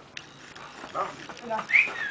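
Short voice calls, then a brief rising whistle near the end.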